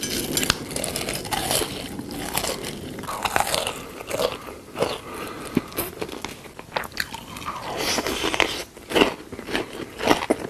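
Close-miked crunchy biting and chewing of food, a run of irregular short crunches.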